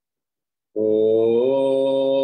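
A long, held chanted note in a low voice that starts suddenly about three-quarters of a second in, slides up a little in pitch, then holds steady.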